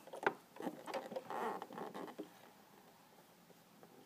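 Small clicks and soft rustling from fingers handling thread around a Singer sewing machine's needle and presser foot, close to the microphone, dying away after about two seconds.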